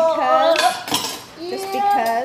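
Clinks and rattles of a small spice jar of crushed red pepper being handled and shaken over a pizza, with a high-pitched voice sounding twice.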